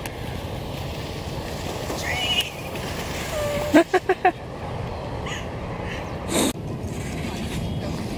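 Steady wind-like rushing on the microphone with brief voices: a short squeal about two seconds in and a quick four-beat laugh just before four seconds, then a loud rush of noise that cuts off suddenly.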